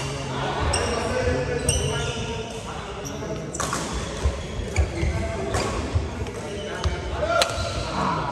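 Badminton play in a large echoing hall: a string of sharp racket hits on shuttlecocks, short high squeaks from shoes on the court mat, and a steady background of players' voices.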